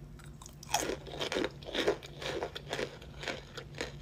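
Raw cornstarch chunk being bitten and chewed close to the microphone: a run of crunches, about two to three a second, starting just under a second in.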